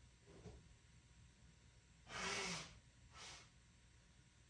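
Two breath sounds from a person over faint room tone: a louder one about half a second long about two seconds in, then a shorter, fainter one a second later.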